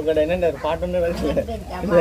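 Speech: people's voices talking, with no other distinct sound standing out.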